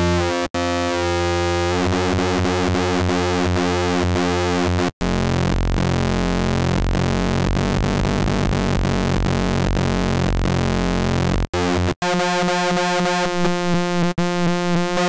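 Sustained synthesizer note from Ableton's Operator FM synth, a rich buzzy tone whose harmonics shift and swirl as its oscillator settings are changed. The note cuts off and restarts briefly about half a second in, around five seconds and again near the end, where it turns into a pulsing wobble.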